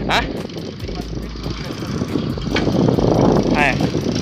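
Wind buffeting the microphone and tyre-on-road noise from a bicycle rolling along a street, swelling louder in the second half.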